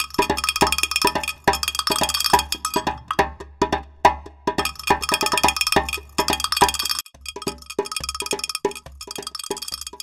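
Percussion-led theme jingle: a quick, even rhythm of struck, ringing pitched notes over a steady bass, with a brief break about seven seconds in.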